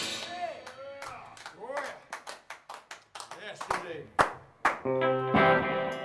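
The band's final chord rings out and fades, followed by a handful of people clapping and calling out. About five seconds in, an electric guitar chord rings out.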